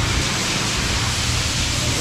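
Steady, loud background rushing noise with a low rumble, even throughout, with no distinct knocks or tones: the running din of a ship-repair workshop.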